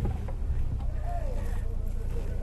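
Suzuki Jimny engine running, a steady low rumble.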